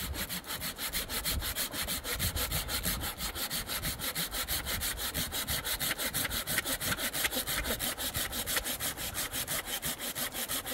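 Hand saw cutting through a branch of firewood in quick, even back-and-forth strokes, about five a second.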